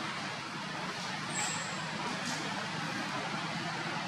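Steady hiss of outdoor background noise, with a brief thin high whistle about one and a half seconds in.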